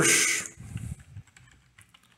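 Light computer keyboard typing: a run of faint, scattered key clicks, following a man's spoken word that ends about half a second in.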